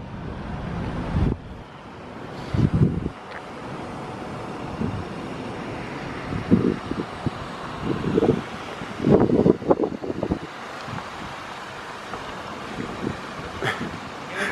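A small Kia sedan driving slowly across a parking lot toward the listener, under a steady rush of wind on the microphone. Several loud, low gusts of wind hit the microphone, the strongest about nine to ten seconds in.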